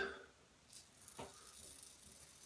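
Faint scraping of a metal safety razor stroke over lathered scalp by the ear, about a second in.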